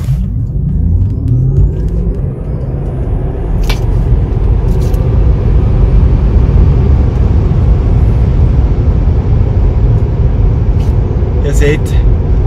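Tesla Model 3 Long Range Dual Motor accelerating flat out from a standstill, heard from inside the cabin: the electric motors' whine rises in pitch over the first couple of seconds. Then steady tyre and wind noise at motorway speed.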